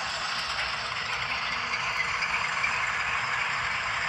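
Sound decoder in a model GE U25B diesel locomotive playing its engine start-up and running sound through the model's small speaker: a steady, thin, rattly diesel noise with no deep bass.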